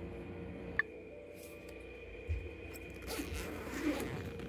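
A power-tool kit box being opened and its contents handled: a small click about a second in, then a short scraping rush near the end, over a faint steady hum.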